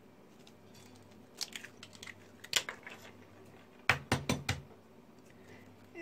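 Eggs tapped against the rim of a white bowl and cracked open: a few scattered clicks, then a quick run of sharper knocks about four seconds in.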